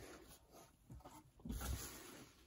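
Faint rustling of a bubble-wrap sheet being lifted and handled, with a soft low bump about a second and a half in.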